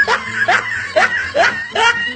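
Loud laughter: a rapid run of short 'ha' bursts, each rising in pitch, about two or three a second.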